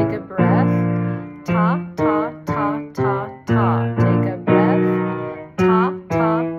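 A vocal warm-up exercise: a woman singing short repeated "ta" syllables on a pattern of notes, with a piano playing the pattern alongside. Most notes are short and clipped, and two are held for about a second.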